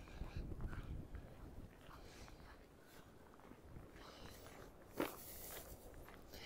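Faint footsteps of a walker crunching and scuffing on a snow-dusted sidewalk, with low wind rumble on the microphone early on and a single sharper click about five seconds in.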